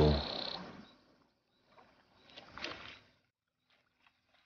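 Water splashing and sloshing around two young hippos wrestling in the shallows, in one short burst about two seconds in.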